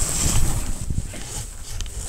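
Rustling and handling noise as the camera brushes against a camouflage jacket, with low rumbling bumps.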